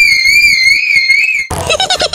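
A high-pitched, pitched-up voice scream held for about a second and a half, wavering slightly, then cut off by a quick run of squeaky, sped-up vocal sounds.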